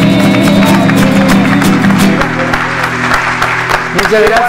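Acoustic guitar strumming the closing chords of a song, with applause joining in over the last couple of seconds.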